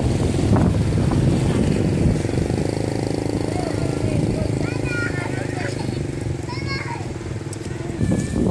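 Voices talking with an engine running steadily underneath, and a few short high chirps around the middle.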